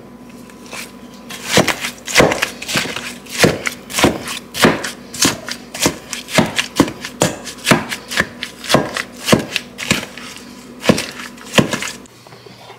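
Black potato masher pounding thawed strawberries in a stainless steel bowl: sharp squelching strikes, about two a second, as the masher crushes the berries against the bowl bottom. This is the fruit being mashed for strawberry jam.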